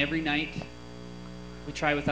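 A man speaking, breaking off for about a second in the middle, with a steady low electrical mains hum underneath throughout.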